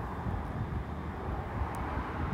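Steady low background rumble with no speech, and one faint short click near the end, as a stylus touches the tablet screen to start drawing a line.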